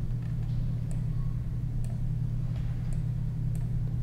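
Steady low hum with a few faint clicks, typical of computer mouse clicks.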